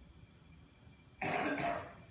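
A man's cough close to a microphone: a sudden double burst about a second in, fading quickly, over faint room tone.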